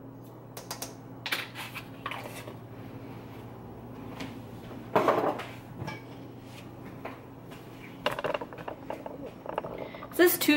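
Scattered clinks and knocks of kitchen utensils: a measuring spoon against the stainless steel mixer bowl and things being handled and set down on the countertop, with one louder knock about five seconds in.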